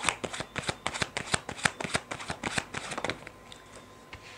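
A deck of playing cards shuffled by hand: a rapid run of crisp card clicks and flutters for about three seconds, then it stops.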